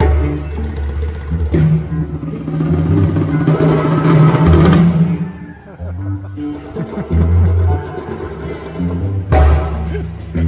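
A live band playing, with a drum kit carrying the beat under held low notes; a swell of cymbals builds in the middle, and a loud crash hit comes near the end.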